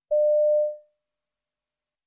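A single steady electronic beep, one pure mid-pitched tone about half a second long that fades out. It is the test's signal tone marking the start of a recorded listening extract.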